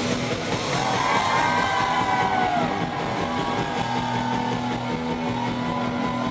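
Live rock band playing: electric guitar through a Marshall amp sounds long notes that slide and bend in pitch over the band. From about two-thirds of the way in, a steady low note is held underneath.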